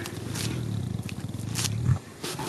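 African lion making a long, low, pulsing rumble while being petted, rising briefly just before it stops. A few short scratchy rustles sound over it.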